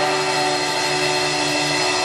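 Electric guitars of a live rock band holding one sustained, distorted chord, ringing steadily with no drum beat under it.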